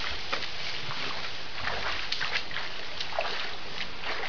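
African bush elephant wading through a shallow stream, its feet splashing and sloshing in the water as irregular short splashes over a steady background hiss.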